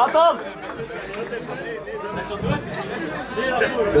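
Crowd of people talking and calling out over one another in a club, with no music playing; a loud shout right at the start.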